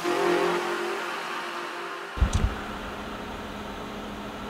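Music fading out over the first two seconds, then a cut to the inside of a car: a few dull thumps, then a steady low hum in the cabin.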